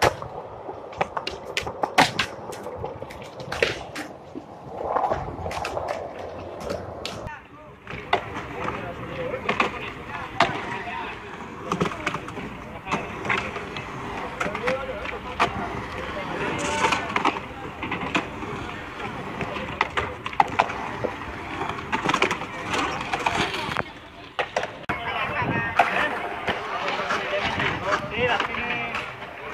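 Skateboards rolling over hard ground with wheel noise and repeated sharp clacks and knocks of boards striking the surface, with people talking in the background.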